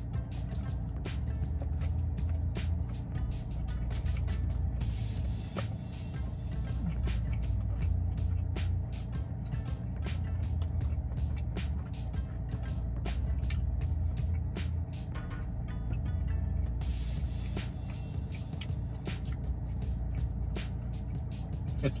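A man chewing a cheeseburger with crispy onion strings close to the microphone, with many small irregular mouth clicks and crunches, over steady background music.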